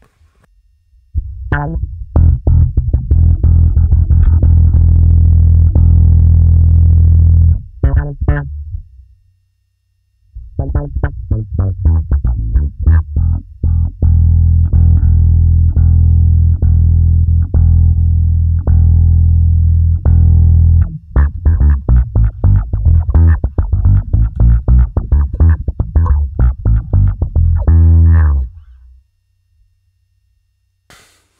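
Electric bass played through an envelope filter (auto-filter) set to up mode, as quick plucked notes over sustained low tones. Two phrases: the first breaks off about a third of the way in, and after a pause of a couple of seconds a longer second phrase runs on and stops shortly before the end.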